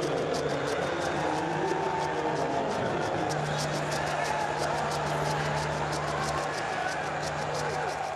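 Pitchside voices and chatter mixed with music, with a fast steady ticking running throughout and a low steady hum coming in about three seconds in.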